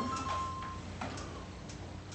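A marker writing on a whiteboard: a thin squeak through most of the first second, then a tap and a few faint strokes over a low room hum.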